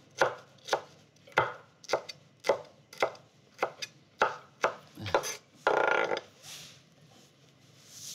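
Chef's knife chopping cauliflower stem and leaves on a wooden cutting board, in even knocks about two a second. The chopping stops after about five seconds, and a longer noise follows about six seconds in.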